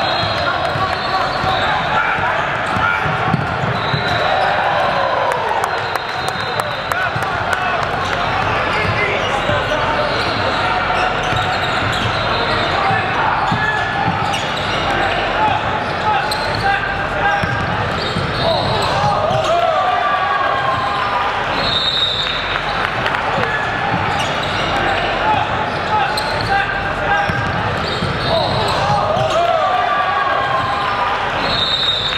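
Live gym sound of a basketball game: steady indistinct chatter from players and spectators, a basketball dribbling on the hardwood court, and short high squeaks scattered throughout, typical of sneakers on the court.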